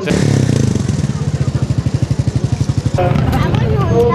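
Homemade motorcycle with a Zaporozhets car engine running with a rapid, even beat. It is cut off about three seconds in by voices.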